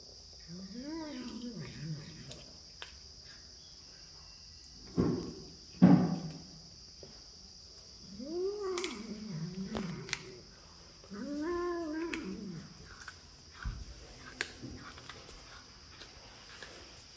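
A tabby domestic cat makes three long, low, wavering meow-growls, each rising then falling in pitch, while it eats a piece of chicken. Two loud knocks come about five and six seconds in.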